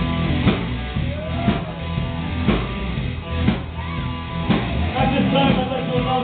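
Live rock band playing: electric guitars with bending lead notes over bass and a drum kit, the drum strikes landing about once a second. A voice comes in singing near the end.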